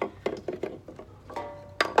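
Small metallic clicks and clinks of wire cutters and a snipped-off piece of paper-clip wire being handled. There is a brief ringing ping about a second and a half in and a sharp, louder click near the end.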